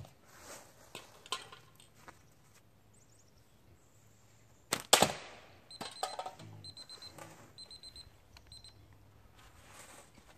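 Slingshot shots cracking, the loudest pair about five seconds in as a can is knocked down, then a digital timer beeping in four quick groups of high beeps, marking the end of the one-minute run.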